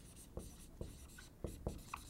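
Dry-erase marker writing on a whiteboard: several short, faint strokes as figures and letters are written.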